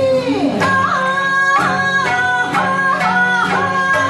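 Live band music: female vocals singing a melody in long held notes that bend at their ends, over strummed acoustic guitar and a plucked sanshin.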